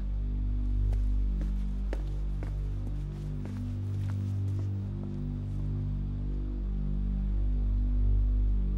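Tense drama score: low held tones that change every second or two, with a few faint clicks in the first few seconds.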